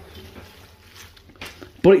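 Faint bubbling of spaghetti cooking in a pot of pasta water, garlic and oil, with a couple of soft clicks of metal tongs against the pot as the pasta is stirred.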